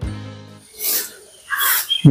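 Background music dying away, then two brushy swishes of a long-handled broom sweeping fallen leaves, about a second in and near the end.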